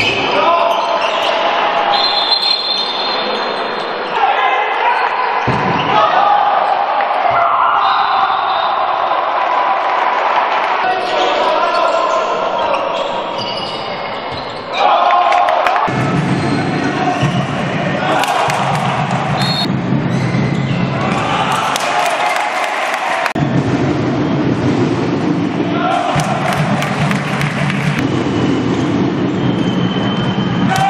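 A handball game in a sports hall: the ball bouncing on the court floor among players' shouts and voices. About halfway through, the sound cuts abruptly to a louder, fuller mix.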